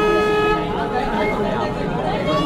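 A steady horn tone, a single held note, cutting off about half a second in, then crowd chatter and voices.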